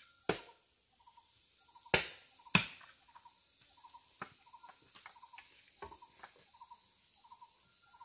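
Three sharp chopping strikes of a hand tool on wood in the first three seconds, then a few lighter taps. Under them, insects drone steadily on a high note and a short chirp repeats about twice a second.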